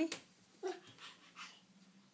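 A baby's few short, faint vocal sounds, brief soft grunts or coos in quick succession, after a single click near the start.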